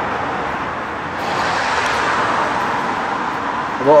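Steady road traffic noise with tyre hiss, swelling about a second in as a vehicle passes.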